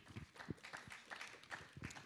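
Faint, irregular soft clicks and rustles in a quiet room: low-level room noise in a pause between speakers.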